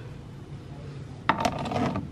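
Decorative copper-finish serving trays clinking against each other in their stack as one is handled, a quick cluster of clinks with a short ring about a second in.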